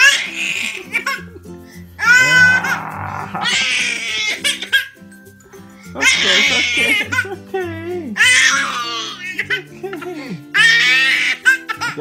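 A baby's high-pitched squealing laughter comes in about six bursts, each about a second long, over background music.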